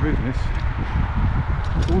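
Wind noise on a head-mounted camera's microphone while riding a bicycle: a steady low rumble. A man's voice comes in briefly at the start and again near the end.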